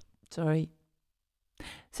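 A woman's short voiced sigh into a close studio microphone about half a second in, exasperated after a reading slip. A faint breath in follows near the end.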